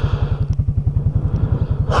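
Can-Am Outlander 700 ATV engine idling, with a steady, fast, even low pulse.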